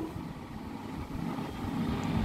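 Low background rumble, with a pen writing faintly on paper.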